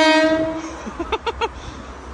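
Horn of a Class 166 Turbo diesel train sounding one short blast of about two-thirds of a second, starting sharply and steady in pitch.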